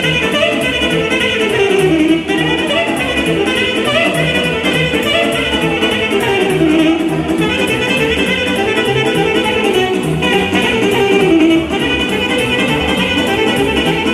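Live Romanian sârbă dance music: an alto saxophone plays an ornamented melody over a steady electronic keyboard (orga) beat.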